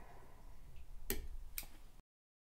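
Small fly-tying scissors snipping the tying thread of a dubbing loop: two sharp clicks about half a second apart, the first louder.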